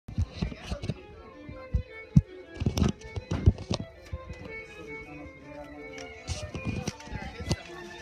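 Music playing with voices, over irregular knocks and thumps, the loudest a few sharp knocks between about two and three and a half seconds in.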